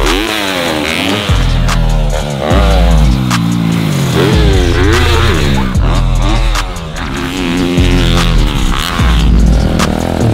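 Dirt bike engines revving up and down again and again as the bikes take jumps, mixed with bass-heavy electronic music.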